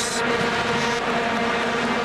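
Stadium crowd noise dominated by the steady, unbroken drone of many vuvuzelas blowing at one pitch.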